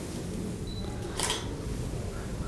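A pause in speech: steady low room rumble, with one short, sharp click about a second in.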